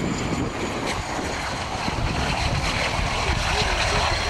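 BAE Hawk T1 jet with its Adour turbofan, touching down and rolling out on a wet runway: a steady jet rumble and rush with a faint high whine, with wind buffeting the microphone.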